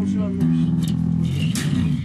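Electric bass guitar playing a line of held notes that step between pitches, sliding downward near the end.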